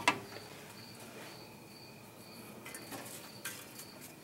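Crickets chirping faintly in short high pulses about twice a second. A single sharp metallic knock at the very start comes from the steel valve cover being handled.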